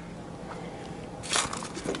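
Low outdoor background with a short crunch of a footstep on gravel about a second and a half in, and a smaller one just before the end.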